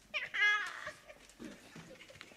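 A single high, meow-like vocal cry of under a second that rises and then falls, followed by faint knocks and shuffling.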